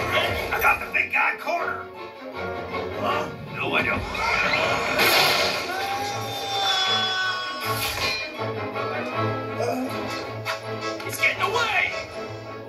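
Animated film soundtrack playing from a television: cartoon score with music running throughout, and two loud noisy sound-effect bursts, one about five seconds in and one near eight seconds.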